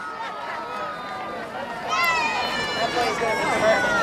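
Sideline voices of spectators and players calling out at an outdoor football game. About halfway through, one voice rises into a long shout whose pitch slowly falls.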